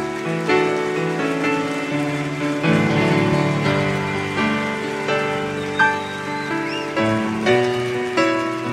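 Piano playing a slow passage of chords, each struck cleanly and left to ring, changing about once a second. The strongest chord comes a little before the six-second mark.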